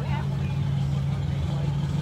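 Steady low mechanical hum, with a man's voice briefly at the start.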